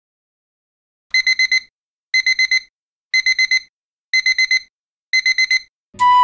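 Digital alarm-clock beeping: starting about a second in, five sets of four quick, high beeps, one set each second.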